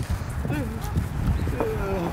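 Faint voices away from the microphone, with scattered low knocks and rumble.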